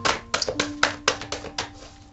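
A deck of cards being shuffled by hand: a quick, irregular run of about eight sharp taps and clicks in two seconds.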